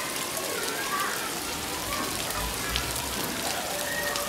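Rain falling steadily, with scattered drops ticking. A brief low rumble comes about two to three seconds in.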